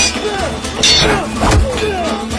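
Dramatic soundtrack music under fight sound effects: a sharp hit at the start, a swoosh about a second in, and a heavy thud about a second and a half in.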